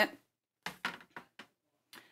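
Five short, light clicks and taps, starting just over half a second in and spread over about a second: handling noise from sewing things being moved on a work table.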